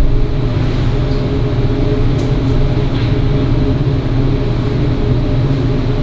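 Steady low hum of meeting-room background noise, in the manner of ventilation or an electrical hum, with a couple of faint clicks.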